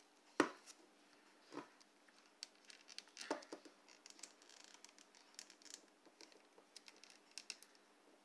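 Faint, irregular small clicks and scrapes of hard plastic on plastic as a toy fighter jet accessory is worked into an action figure's hand.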